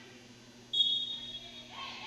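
Referee's whistle: one short blast of about half a second, starting just under a second in.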